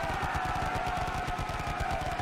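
Machine-gun fire sound effect: a rapid, unbroken burst of shots, with a held tone above it that slowly sinks in pitch.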